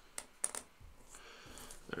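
Game coin tokens clinking as they are handled and set down on the table. There are three sharp clicks in the first half second or so.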